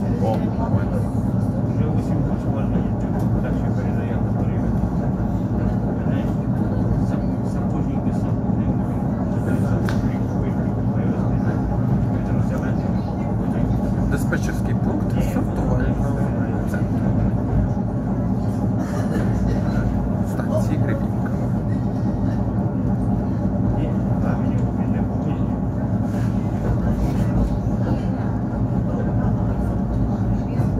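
An ER9-series electric multiple unit running at steady speed, heard from inside the passenger car: an unbroken rumble of wheels and traction equipment with a low hum, and occasional faint clicks over it.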